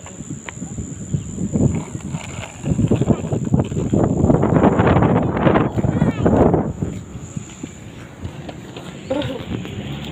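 Skateboard wheels rolling on a concrete footpath, a rough rumble with clacks. It builds about three seconds in, is loudest for a few seconds, and fades out about seven seconds in.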